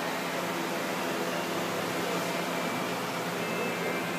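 Steady hiss with a low hum: the background noise of a large indoor arena, like its ventilation running. No hoofbeats or other distinct sounds stand out.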